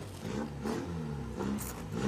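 A car engine revving in several short blips, its pitch rising and falling with each one.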